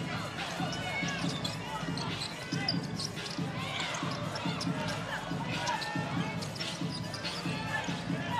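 Basketball being dribbled on a hardwood court, with repeated short bounces, mixed with sneakers squeaking on the floor and players calling out in a large, sparsely filled arena.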